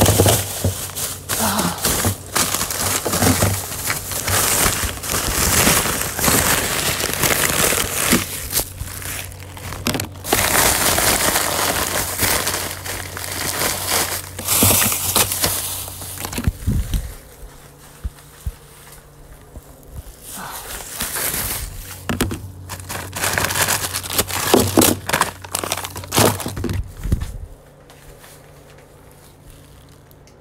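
Plastic bags and food packaging crinkling and rustling as food is taken out of a refrigerator, with occasional knocks of containers. The rustling is dense for about the first half, then thins to scattered bursts.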